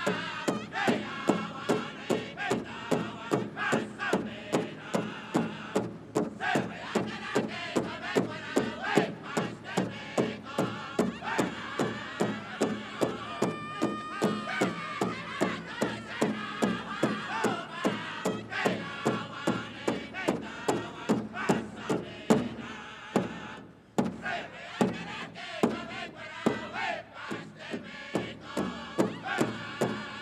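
Pow wow drum group singing a song in unison over a large powwow drum struck in a steady, even beat. Drum and voices stop briefly about three-quarters of the way through, then start again.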